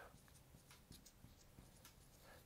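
Near silence with a few faint ticks of a marker writing on a glass lightboard.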